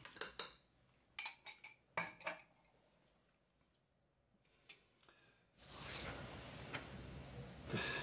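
A stirring utensil knocking and scraping against a Thermomix's stainless-steel mixing bowl, a few short clinks in the first two seconds or so. After a quiet stretch, a steady faint hiss sets in for the last two seconds.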